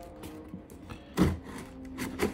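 Soft background music with held notes, and about a second in a short scraping cut as a pocket-knife blade slices through the packing tape on a cardboard box.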